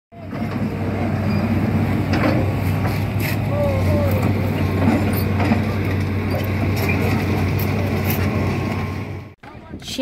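A hydraulic excavator's diesel engine running steadily, with people's voices and calls over it; it cuts off suddenly near the end.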